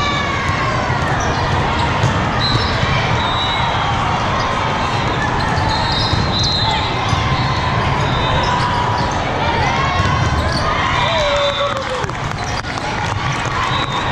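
Busy indoor volleyball hall din: many overlapping voices, sneakers squeaking on the sport court floor, and volleyballs being hit and bouncing, all echoing in a large hall.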